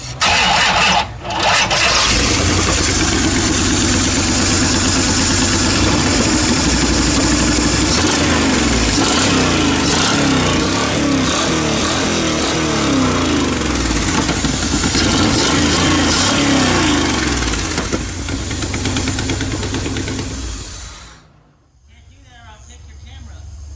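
A fuel-injected small-block V8 engine starting about a second in, then running loud and steady. It eases off after about 18 s and stops shortly before the end.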